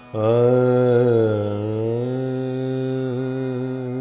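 A man's voice singing one long held note on 'aa' in Hindustani classical style. It wavers a little in pitch for the first two seconds and then holds steady: the opening note of the aaroh, the ascending scale, of Raag Ahir Bhairav.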